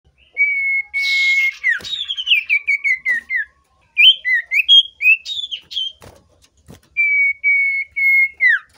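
Sirtu cipoh (iora) singing: long level whistles, a falling string of quick short notes, then varied chirping notes, with a short harsh rasp about a second in. According to the title it is a male in breeding condition, excited by a female.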